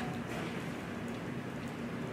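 Steady even hiss of room tone picked up by the microphone, with no speech.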